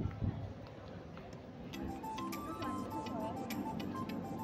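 Hubbub of a busy indoor station concourse, with two low thumps right at the start. About two seconds in, background music comes in with a regular ticking beat and a stepping melody line.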